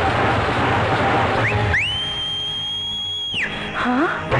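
A street band's drums play loudly, then stop about a second and a half in for one long, shrill finger whistle. The whistle swoops up, holds steady for nearly two seconds and drops away.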